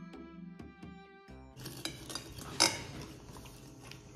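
Light background music with note-like tones that stops about a second and a half in, followed by noises of eating instant noodles at a table, with small clicks and one sharp cutlery click near the middle.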